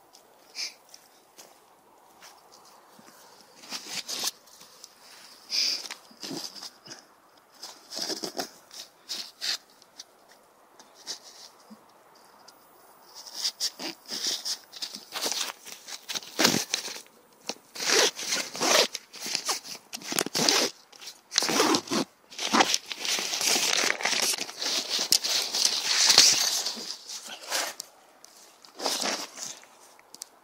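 Irregular rustling, crinkling and scraping of nylon camping gear and dry leaves being handled: a folded pop-up tent being unpacked and laid out on the forest floor. Sparse scrapes at first, then a denser run of rustling from about halfway in.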